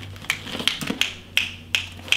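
Fingers snapping in a steady beat, about three snaps a second.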